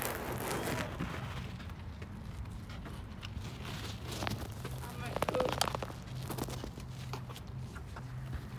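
Handling noise from a phone carried with its lens covered: rubbing and scattered knocks over a steady low hum, with faint voices too indistinct to make out and a short buzzy rattle about five seconds in.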